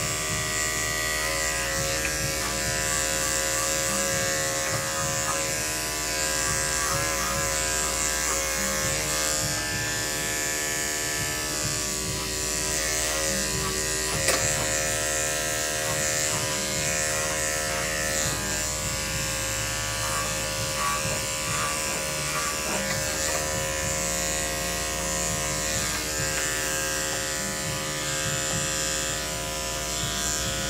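Electric dog grooming clippers running with a steady buzzing hum as they trim the fur on a small dog's head.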